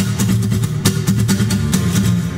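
Acoustic guitar strummed in a steady rhythm, chords ringing between strokes: the instrumental introduction of a song before the voice comes in.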